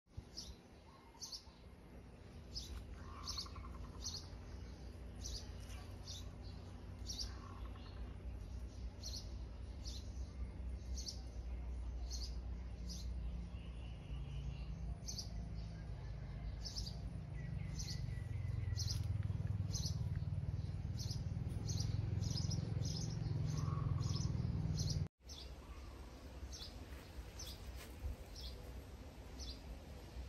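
A small bird chirping over and over, short high notes about one to two a second, over a low steady rumble that grows louder in the second half and breaks off briefly near the end.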